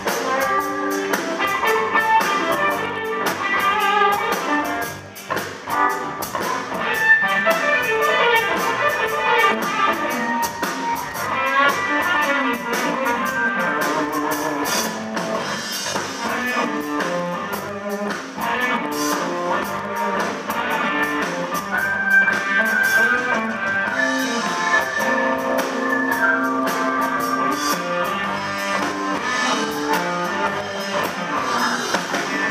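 Live band playing an instrumental blues jam on electric guitars, bass guitar and drum kit, with the level dipping briefly about five seconds in.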